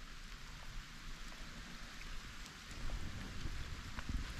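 Faint, steady outdoor hiss with an uneven low rumble underneath, growing a little louder near the end.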